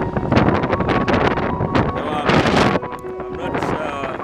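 Wind buffeting the microphone, with indistinct voices of people in the background.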